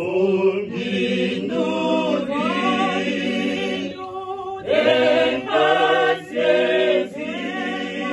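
Small mixed group of men and women singing together a cappella in sustained phrases, with brief breaths between phrases about four and six seconds in.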